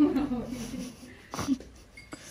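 Voices talking during the first second, then a short breathy vocal sound, like a huff or half-laugh, about one and a half seconds in.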